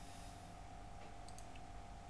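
Faint clicks of a computer mouse, a couple of soft clicks about a second in, over a low steady hum.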